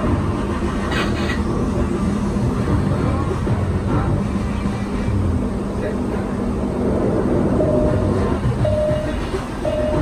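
Three short electronic beeps about a second apart near the end, from an AR photo booth, over a loud, steady background of rumble and a low hum.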